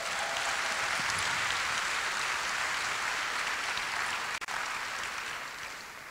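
Audience applauding, a steady spread of clapping that tapers off near the end.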